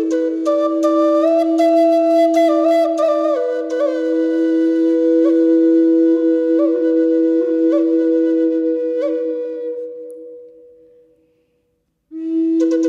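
Native American flute playing a slow melody of long held notes with quick grace-note flourishes, over a steady lower drone tone. The phrase fades out about ten seconds in, leaving silence near the end.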